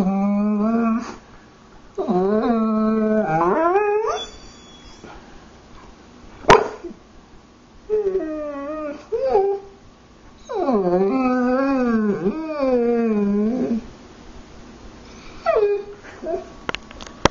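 A dog 'talking' in long drawn-out whining howls that bend up and down in pitch, in about five stretches lasting from one to three seconds each. There is a single sharp click about six and a half seconds in.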